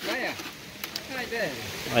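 Shallow rocky river running as a steady hiss, with people talking quietly in the background and a couple of light clicks about halfway.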